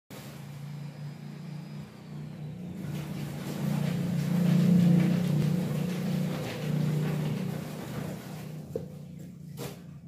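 A low, steady engine hum that grows to its loudest about halfway through and then fades, with two short knocks near the end.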